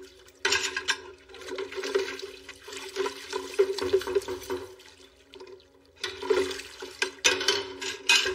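Water running and splashing in a soapy kitchen sink as dishes are washed by hand, coming in uneven surges from about half a second in, over a low steady hum.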